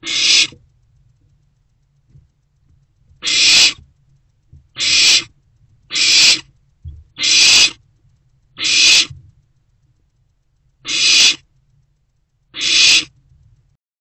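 Barn owl owlets giving rasping, hissing calls: eight separate hisses of about half a second each, a second or two apart. This hissing 'snore' is the barn owl nestling's food-begging call.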